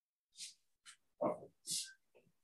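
A man's short, breathy exhalations or sniffs, with a quietly spoken "okay" between them.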